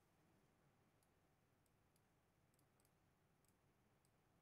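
Near silence, with a handful of very faint, scattered computer-mouse clicks.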